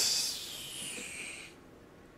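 A man's long breathy exhale, a hiss of air with no voice in it, starting sharply and fading out over about a second and a half.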